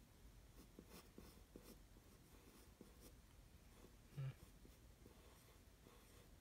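Faint scratching of a graphite pencil on paper in short, irregular strokes. A brief low sound interrupts it about four seconds in.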